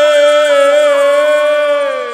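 A male Baul singer holds one long, high sung note that slides down near the end. Beneath it is a light, even tapping rhythm of about four beats a second.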